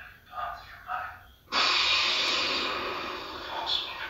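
Star Wars film audio from the Death Star tree topper's speaker: a few short snatches of speech, then, about a second and a half in, a sudden loud hissing breath from Darth Vader's respirator that fades away over about two seconds.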